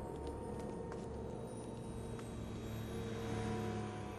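Film soundtrack ambience: a low, steady droning hum with several held tones and a few faint ticks.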